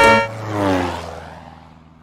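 An instrumental break of a children's song ends on a held chord. A cartoon sound effect follows, a sound that slides down in pitch over a low hum and fades away.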